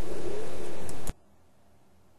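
Steady rushing background noise that cuts off abruptly just over a second in, leaving silence.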